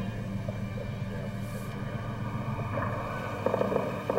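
Low steady rumble of a vehicle engine idling. Near the end comes a rapid string of sharp, faint pops: distant gunfire.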